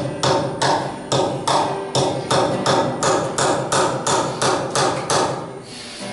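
Hammer driving a nail into a wooden log: a steady series of sharp blows, about two to three a second, that stops shortly before the end.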